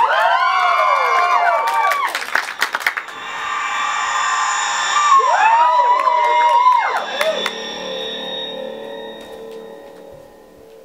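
Audience cheering and whooping, several voices at once, with a few claps: one burst at the start and a second about five seconds in, dying away near the end.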